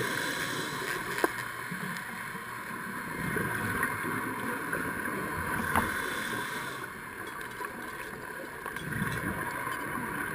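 Underwater ambience picked up by a camera in its waterproof housing: a steady muffled hiss with low rumbles, broken by a sharp click about a second in and another near six seconds.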